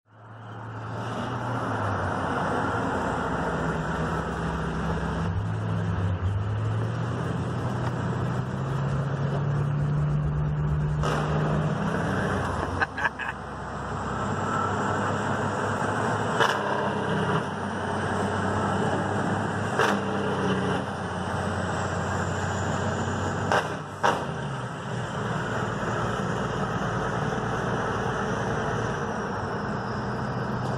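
A 1977 Peterbilt 359's diesel engine running on the road, heard from inside a car following it, over the car's road noise. The engine note climbs for several seconds, then drops, and a few sharp clicks come in the second half.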